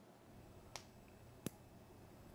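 Near silence in a small room, broken by two short, sharp clicks about three quarters of a second apart.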